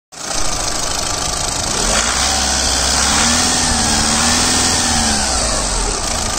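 Volkswagen Vento's common-rail diesel engine running steadily, heard close up in the open engine bay. In the middle its note rises slightly and falls back again.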